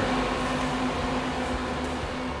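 Steady mechanical hum with a faint low tone held throughout, slowly fading towards the end.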